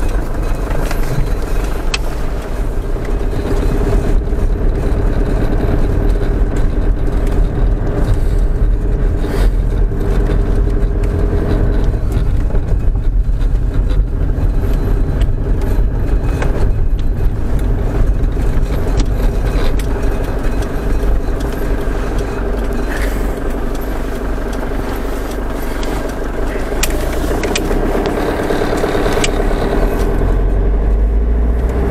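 Camper van's engine and road noise heard from inside the cab while driving slowly, a steady low hum with occasional sharp clicks and rattles.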